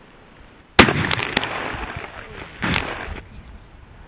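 A single sharp rifle shot about a second in, hitting a water-filled plastic jug, followed by splashing and clatter with a second loud burst near three seconds.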